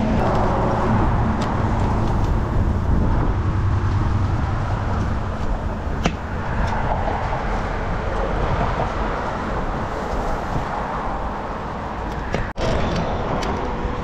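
Steady low rumble of road traffic passing close by, with one sharp click about six seconds in and a split-second drop-out near the end.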